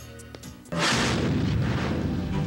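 Background score: a few light taps, then under a second in a sudden loud boom-and-crash hit that dies away slowly as the music carries on.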